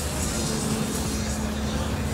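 Funfair ambience carried by a steady low machine hum, with a steady tone joining in shortly after the start and voices in the background.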